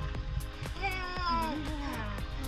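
A baby's drawn-out squeal, falling in pitch and lasting about a second, over background music with a steady beat.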